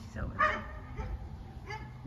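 Wind rumbling on the microphone, with a dog's short falling whine about a quarter second in.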